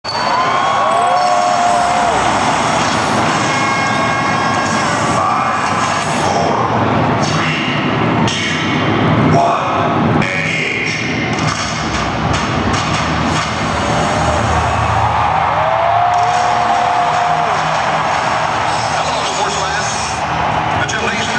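Loud arena crowd noise mixed with the light show's soundtrack of music and sound effects over the arena sound system, with pitch-sliding tones that rise and fall about a second in and again near the three-quarter mark.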